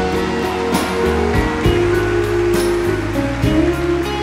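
Live country band with orchestra playing an instrumental passage with no singing: held notes over a bass line and a steady beat.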